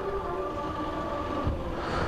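Faint steady machine hum with a few held tones over a soft hiss.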